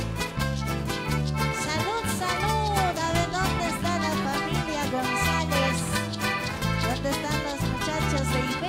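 Live band playing huaycheño, an Andean huayño-style dance music, with a steady bass pulse under a gliding melody line.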